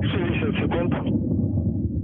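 Soyuz rocket's first stage and four strap-on boosters firing in flight: a steady low rumble that starts suddenly and holds an even level.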